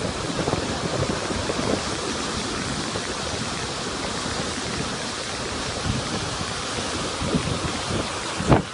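Muddy flash-flood torrent rushing down a steep rocky slope, a steady, even rush of heavy water and spray.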